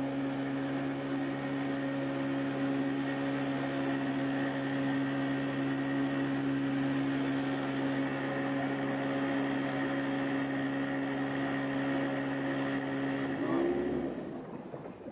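Boat engine driving a wooden dugout canoe upriver, running at a steady pitch. Near the end the note bends and breaks off.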